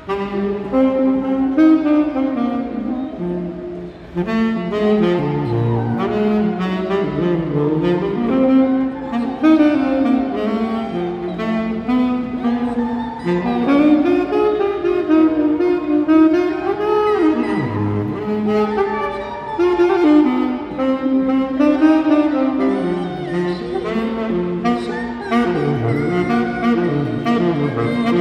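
A saxophone played live: a continuous melody of changing notes in long phrases, with a short break about four seconds in.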